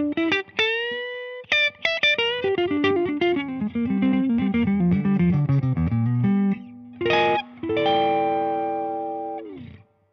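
Prestige Troubadour solid-body electric guitar with Seymour Duncan humbuckers, played straight into an amp. A note is bent upward about half a second in, then comes a quick run of single notes. Near the end a short chord is followed by a held chord that rings and fades out.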